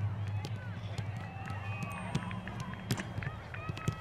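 Soccer balls being kicked and passed on artificial turf: a string of short, sharp thuds at irregular intervals, several balls going at once. Faint shouts and calls from boys' voices carry across the field between the kicks.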